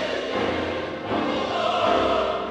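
Choir singing with full orchestra, a loud dense chord that swells again about a second in.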